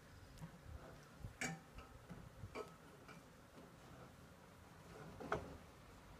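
Mostly quiet, with a few faint, brief clicks spaced a second or more apart.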